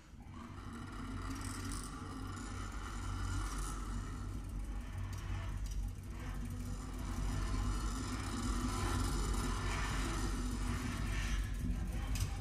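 Baritone saxophone with live electronics sounding a continuous low rumbling drone with a rough, hissy layer above it, an extended-technique texture rather than clear notes. It swells in from quiet and grows louder about halfway through.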